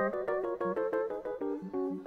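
Rhodes electric piano played alone in a quick run of chords, about six or seven a second, stepping gradually lower in pitch.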